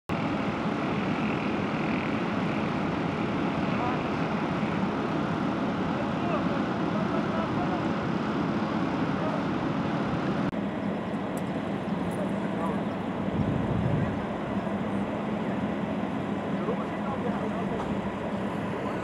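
Steady low engine noise from idling military armoured vehicles, with indistinct voices in the background. The sound changes abruptly about ten seconds in.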